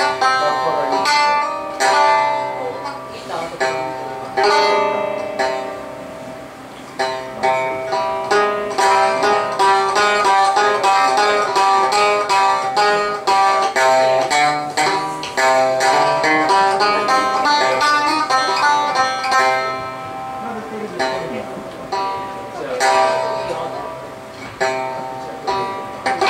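Minmin, a plucked string instrument, played solo. Single picked notes open it, then a long stretch of fast, dense picking in the middle, thinning out to sparser phrases near the end.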